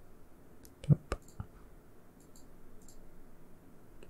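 Computer mouse and keyboard clicks: three sharp clicks close together about a second in, the first the loudest with a dull knock to it, then a few faint ticks.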